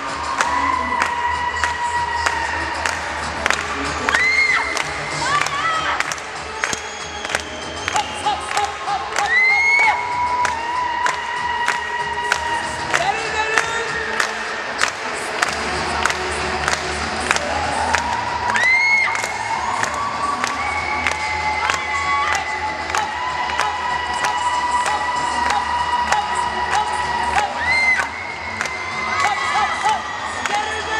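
Rock and roll dance music with a steady fast beat, with a crowd of children cheering and shouting over it. Rising whoops break out every few seconds.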